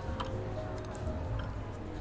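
Background music with a steady low bass pulse, and a few light clicks of spoons and tableware against ceramic bowls.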